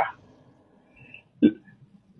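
A pause in a man's speech, broken by one short vocal sound about one and a half seconds in.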